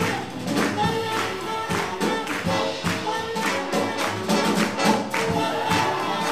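Live swing jazz band playing an up-tempo tune, held horn notes over a steady, quick beat.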